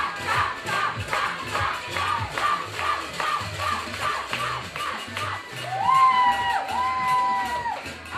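A group of high voices chanting a quick rhythmic cheer, then two long drawn-out calls, one starting just before six seconds in and the next just before seven.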